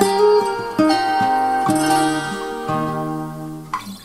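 Acoustic guitar playing a slow run of picked notes and chords with no singing, the notes ringing out with a big-room reverb effect; the last notes die away just before the end.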